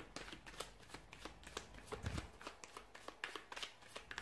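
A deck of tarot cards being shuffled by hand: a quick, irregular run of soft card clicks and flicks, with a dull low knock about halfway through.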